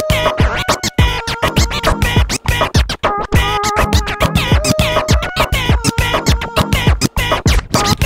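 DJ scratching a track on a DJ controller's jog wheel, the pitch sliding back and forth as the record is pushed and pulled. The sound cuts in and out several times a second.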